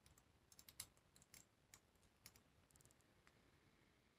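Faint, scattered clicks and taps of tarot cards being handled and laid down on a wooden table, with a quick run of tiny clicks near the end.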